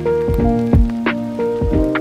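Relaxed chill instrumental music: sustained keyboard chords over a slow beat of kick drum and a snare hit about a second in, with a rain-like patter mixed into the track.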